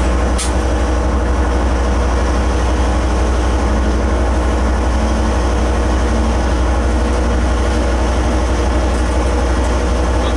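Steady low rumble in the cab of a DL-class diesel-electric locomotive as a line of freight wagons goes by on the next track, with one short click about half a second in.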